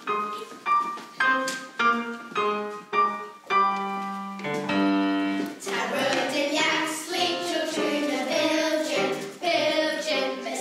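Piano playing a line of separate struck notes that settles on a held chord about halfway through, then a choir of children starts singing in Manx Gaelic over the accompaniment.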